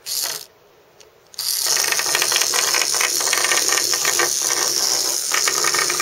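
Small motorized Num Noms toy running, its little motor and plastic gears whirring with a fast, steady clicking that starts about a second and a half in.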